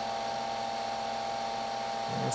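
Steady whir of the upgraded cooling fan in a Palomar 300A tube amplifier, with a faint steady hum, while the amp is keyed down with an unmodulated carrier into a dummy load.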